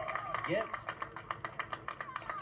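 A man's play-by-play commentary from a televised baseball game, with a rapid patter of sharp clicks running under it.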